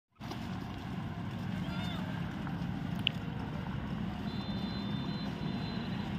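A steady low hum, like an engine running, with a few brief high calls over it and one sharp chirp about three seconds in.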